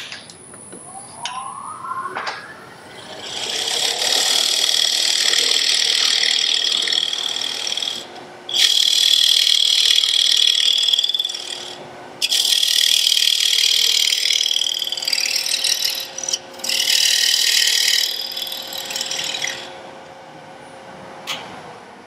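Wood lathe running while a hand-held turning tool cuts into the spinning wood, deepening a recess for a jar lid to fit. The cutting comes in four bouts of a few seconds each with short pauses between, over the lathe's faint steady hum.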